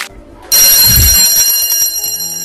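School bell ringing continuously, starting about half a second in, with a brief low rumble under the start of the ring.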